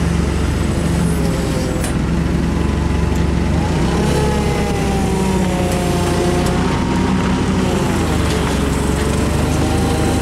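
Komatsu forklift's engine running steadily with a constant low hum while the hydraulic mast carries the riding platform. A wavering, gliding whine rides over it from about four to eight seconds in.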